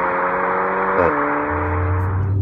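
SEAT Leon Cupra ST 280's turbocharged 2.0 TSI four-cylinder accelerating hard, its exhaust note climbing steadily. About a second in, the DSG gearbox upshifts: the pitch drops at once with a short crack, then starts climbing again.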